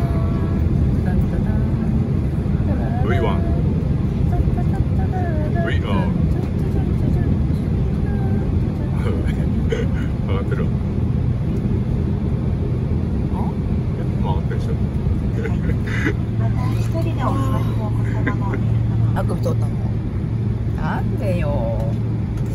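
Steady low rumble of a jet airliner's cabin while the plane moves on the ground, with indistinct voices over it. A low hum in the rumble grows stronger about two-thirds of the way through.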